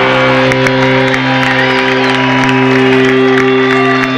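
Live rock band's amplified electric guitars and bass holding one sustained, ringing chord, with the crowd cheering and clapping over it.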